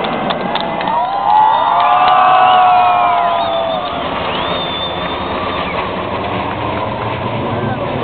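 Jet engines of an aerobatic formation flying over, heard from the street below. The sound swells about a second in and eases off after about four seconds, with spectators' voices around.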